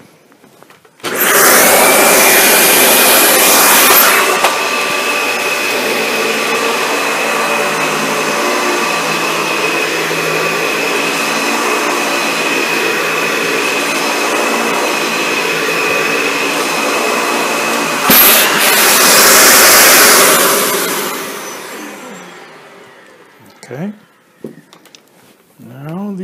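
Dyson ball upright vacuum cleaner switched on about a second in, running with a steady motor whine over medium-pile carpet to pull up ground-in dog hair. It is louder for its first few seconds and again for a few seconds near the end, then spins down after being switched off.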